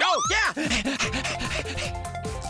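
A cartoon character's quick breathy vocal sounds, short rising-and-falling voiced bursts like panting laughs, over children's background music. From about a second in, the vocal sounds thin out and sustained music notes carry on.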